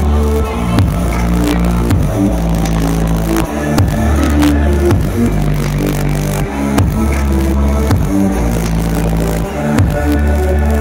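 Loud, bass-heavy electronic dance music played live through a large PA sound system and heard from within the crowd. Heavy sustained bass notes change pitch every second or so under a steady beat.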